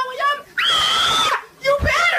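A person screaming in several loud, high-pitched bursts, the longest held for almost a second in the middle.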